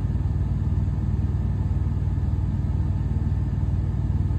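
A steady low rumble from a running motor, with a fast flutter to it.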